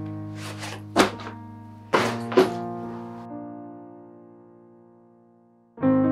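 Background music of sustained electric-piano chords that fade slowly, with a fresh chord struck near the end. A few sharp knocks and thuds fall over the music in the first half, about a second in and again around two seconds in.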